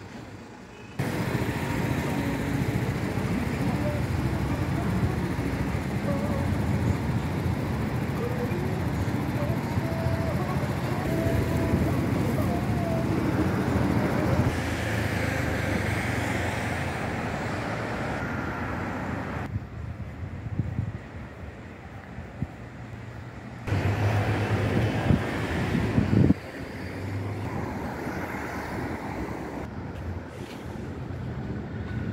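Street traffic noise with vehicles running past. Loud stretches start and stop abruptly, about a second in, again around two-thirds of the way through and near the end, with faint voices among it.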